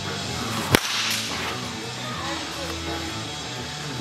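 Baseball bat swung hard: a single sharp crack about a second in, then a short swish, over background music.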